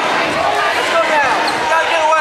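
Spectators' voices chattering across a large gymnasium, with repeated dull thumps in among them.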